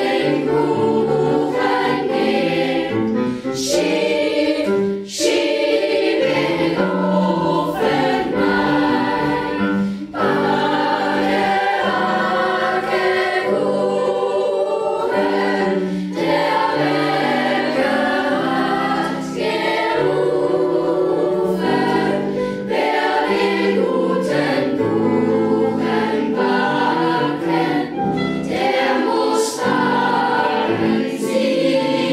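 A children's choir of school pupils singing together, held notes in several parts, with short breaths between phrases.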